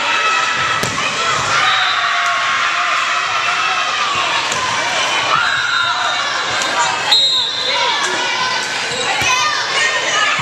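Volleyball rally sounds: players and spectators calling out and shouting over a crowd murmur, with a few sharp smacks of the ball being hit, about a second in and again about seven seconds in.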